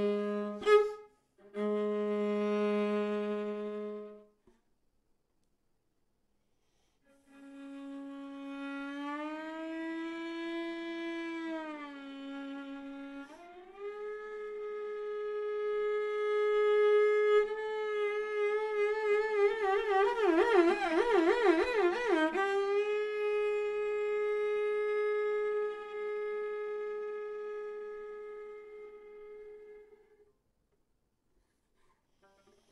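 Solo viola playing sustained bowed notes, broken by a sharp accent about a second in, then a pause of a few seconds. It comes back with slow slides up and down in pitch, settles on a long held note that swells into a wide, fast vibrato, the loudest part, and then fades away near the end.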